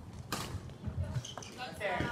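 Badminton play on a wooden gym floor: a sharp racket smack on the shuttlecock about a third of a second in, then shoes squeaking on the court near the end.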